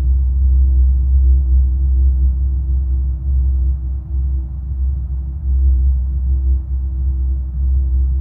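Binaural-beat ambient drone: deep, steady low tones with a thinner held tone above them and a soft hiss, swelling and easing a little in loudness.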